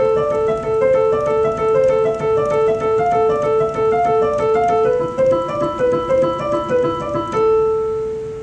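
Keyboard with a piano sound playing a minor-key pattern with one hand: a repeated low A alternating with changing notes above it as the chords move through A minor and neighbouring chords. About seven seconds in, a final A minor chord is struck and rings out, fading.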